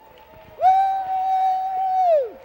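A voice crying out one long, high note that holds level for about a second and a half, then drops away in pitch as it ends.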